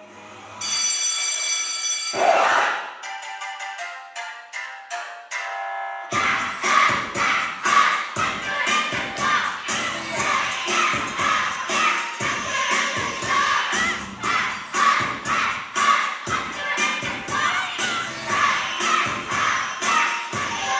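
Dance-performance music track: it opens on a held note and a rushing swoosh, then a few seconds of sparse, stepped notes. A full, steady beat comes in about six seconds in.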